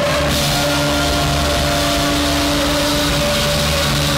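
Live rock band playing loudly, with electric guitars and drum kit, holding long sustained notes.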